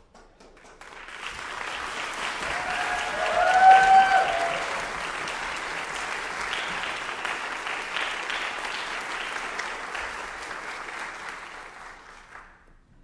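Audience applauding as performers walk on stage, building up over the first second or two and dying away near the end. A short high whoop from someone in the audience rises above the clapping a few seconds in, the loudest moment.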